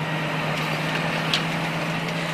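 Tractor engine running steadily as it pulls a planter through the soil: an even drone with one constant low hum.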